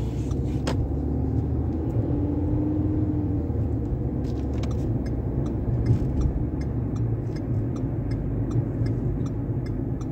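Steady low rumble of road and engine noise inside the cabin of a moving car. From about four seconds in there is a regular light ticking, roughly three ticks a second.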